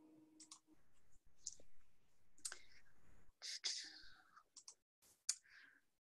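A few faint, scattered clicks with soft rustles between them, picked up on an open microphone during a pause.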